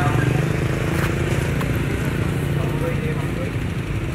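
A motor vehicle's engine idling with a steady, fast-pulsing low rumble, with people's voices talking over it.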